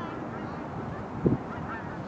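Water birds calling: short, repeated chirping calls over a steady low background noise, with a brief low thump a little past a second in.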